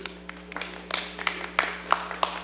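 Scattered light clapping from a few people in a council chamber, irregular sharp claps over a steady low room hum.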